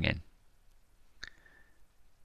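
A man's narrating voice finishing a word, then near quiet broken by a single faint click a little over a second in.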